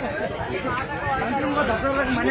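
Speech only: people talking continuously, with voices running over one another.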